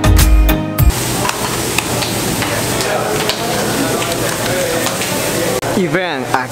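Background music that cuts off about a second in, then steady kitchen sizzling: pupusas cooking on a flat-top griddle, with scattered small clicks and knocks.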